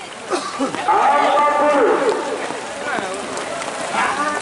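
Bull lowing: one long moo from about a second in, dropping in pitch as it ends, with people's voices around it.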